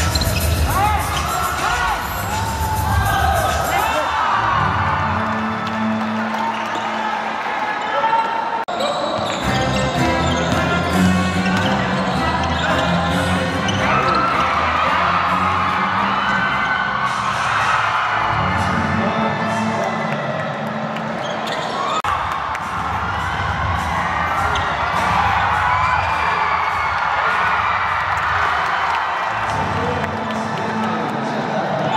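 Live basketball game sound: a ball dribbling on a hardwood court, with players' voices calling out in a large gym.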